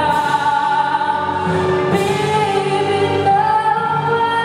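Young male singer singing a Tagalog song into a handheld microphone over musical accompaniment, in long held notes that step to a new pitch about three seconds in.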